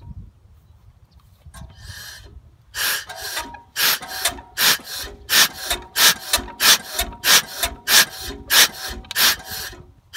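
A Field Marshall single-cylinder diesel tractor being turned over by hand crank: a raspy squeal with each stroke, starting about three seconds in and coming faster as the cranking speeds up. The engine does not fire.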